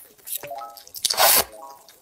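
Close-up mouth sounds of a person slurping glass noodles from a spicy soup: a short slurp, then a loud wet slurp just over a second in.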